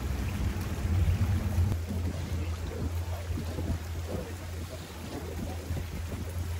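Outboard motor on a moving fishing boat running steadily, a low even drone, with water rushing and churning at the stern.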